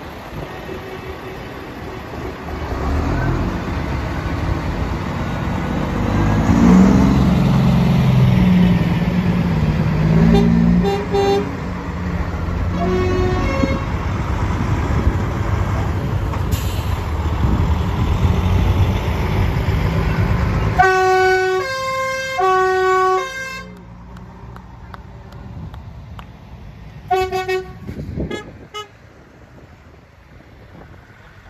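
Decorated lorries driving slowly past, their diesel engines running with a low rumble that swells as the nearest truck goes by. Short horn toots sound about ten and thirteen seconds in. About twenty-one seconds in a horn plays a quick run of notes at different pitches, and another brief toot comes near the end.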